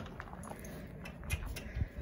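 Pony's hooves stepping on the stable floor as it is led out, with a couple of dull thuds near the end.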